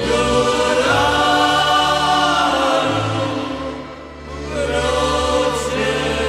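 Choral music: voices hold long sustained chords over slow-changing low bass notes, the sound dipping briefly about four seconds in before swelling again.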